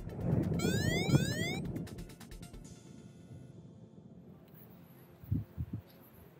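Phone running the XCTrack flight app sounding its cable-proximity alarm: a quick run of rising electronic sweeps about a second in, lasting about a second, over wind rumble on the microphone in flight. The alarm is the sign that the paraglider is within 40 metres of a cable. A few low thumps come near the end.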